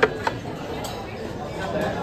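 Two sharp metallic clinks about a quarter second apart, right at the start: serving tongs knocking against a buffet's metal dessert trays, over the murmur of diners' chatter in a large dining room.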